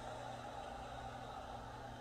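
Steady low hum of an idling car engine under even street background noise.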